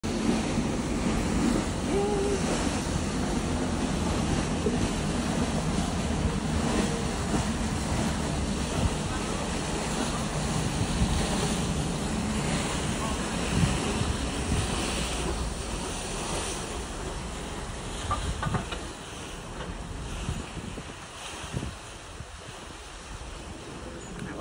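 Wind buffeting the microphone over the rush of sea water, a steady rough noise heaviest in the low end that eases off over the last several seconds.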